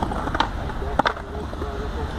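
Skateboard wheels rolling on a concrete mini ramp, a steady low rumble, with two sharp clacks from the board about half a second and one second in.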